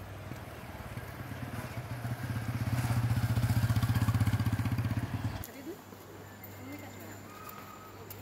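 A small two-wheeler engine running close by with a fast, even pulse, growing louder and then cutting off suddenly about five and a half seconds in.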